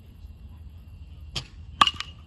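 Baseball bat striking a pitched ball in batting practice: one loud, sharp crack near the end with a brief ringing tail. A lighter click comes about half a second before it.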